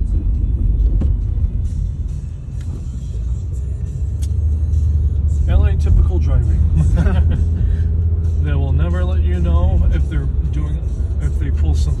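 Steady low rumble of a Nissan car's road and engine noise heard inside the cabin while driving, with a voice rising and falling over it around the middle.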